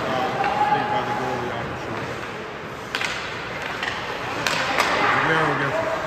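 Ice hockey play on the rink: skates scraping the ice and sticks and puck clacking, with sharp knocks about three seconds in and twice more near the end. A distant shout rises about five seconds in.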